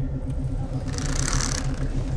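Steady, evenly pulsing low machine hum of a starship bridge, with a short hiss about a second in.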